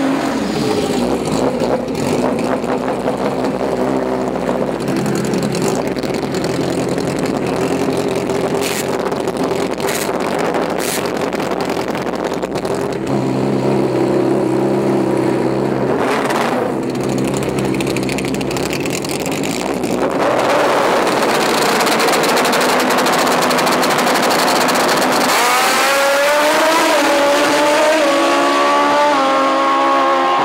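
Drag-racing sport motorcycle engines revving hard as the bikes launch and accelerate down the strip. Near the end the engine note climbs steadily in pitch.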